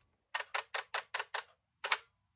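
Fuji Rensha Cardia eight-lens camera firing: a quick run of sharp shutter clicks in even sequence, about seven in under two seconds, with a last click near the end.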